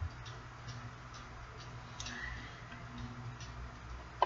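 Faint regular ticking, about two ticks a second, over a steady low hum, with a brief faint high tone about two seconds in.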